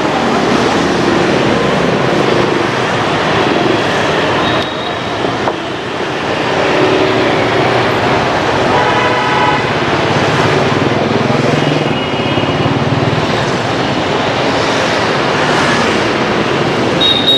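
Busy street traffic, mostly motorbikes and scooters, running steadily and loudly. Short vehicle horn honks sound a few times, clustered about halfway through.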